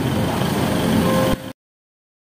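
A vehicle engine running steadily, with street noise around it; the sound cuts off suddenly about one and a half seconds in.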